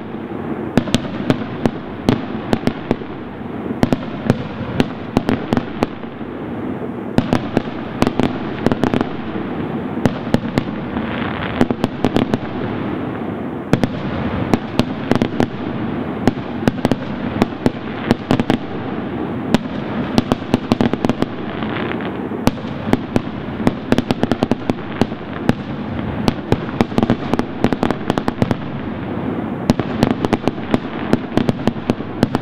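Aerial firework shells bursting in a continuous barrage: many sharp bangs and crackles a second over a steady rumble of overlapping reports.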